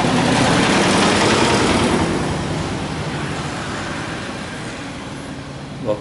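A motor vehicle passing close by: engine and road noise, loudest at the start and fading away gradually over several seconds.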